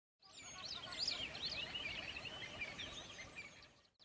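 Faint chorus of many small birds chirping and twittering, quick high chirps overlapping one another. It fades in just after the start and fades out shortly before the end.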